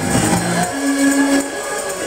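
Live church worship music. A little under a second in, the low end drops away, leaving one held note over a high hiss, and the full band comes back near the end.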